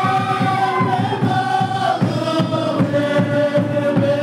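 A congregation of mostly men's voices singing a hymn together in loud unison, holding long notes, over a quick, steady low beat.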